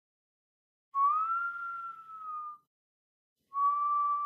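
Two long, high wailing notes. The first comes about a second in, rises slightly, then sinks as it fades. The second, steadier note starts about half a second before the end and carries on.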